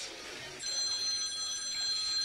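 A steady high-pitched ringing tone, several pitches held together, starting about half a second in.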